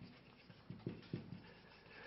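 Very quiet room tone with a few faint, short clicks about halfway through.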